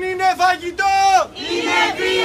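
A group of protesters chanting a slogan loudly in unison, in short, clipped syllables with one longer held syllable about a second in.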